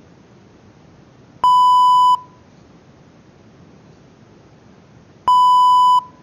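Two identical electronic alert beeps, each a steady, loud, pure-sounding tone lasting under a second. One comes about a second and a half in, the other near the end.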